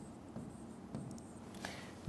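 Pen writing on the surface of an interactive lesson screen: faint strokes with a few light taps.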